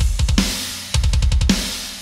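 Short drum-kit sting: a couple of hits, a quick fill about a second in, then a last crash whose cymbal rings and fades away.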